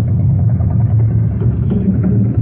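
Rock band playing live, heard through a muffled, bass-heavy concert recording with little treble, the drums prominent.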